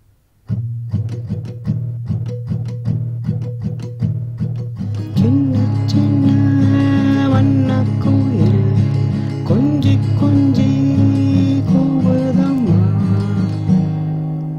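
Acoustic guitar with a capo on the fourth fret, strummed slowly in 6/8 on an A minor shape that sounds as C sharp minor. From about five seconds in, a man's voice sings the melody over the strumming.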